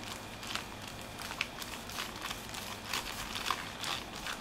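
Faint crinkling and rustling of a plastic bag worn over a fingertip as it rubs thermal compound into the slits of a graphics-card heatsink, with a few scattered small ticks.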